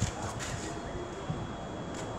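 Quiet outdoor background: a steady faint hiss, with one sharp click right at the start and a fainter one about half a second later.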